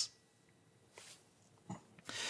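A very quiet pause in a man's speech, with a faint mouth click near the end.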